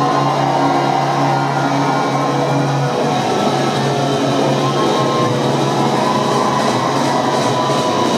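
Hard rock band playing live through a loud PA, heard from the crowd: held, distorted electric guitar chords with a chord change about three seconds in.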